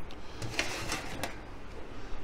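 Light metal clicks and clatter of cooking gear as a roast is moved from a drum smoker onto a wire rack on a sheet pan, with a short stretch of hissing rustle in the middle.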